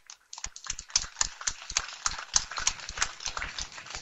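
A quick, irregular run of light clicks and taps, several a second, over a faint hiss.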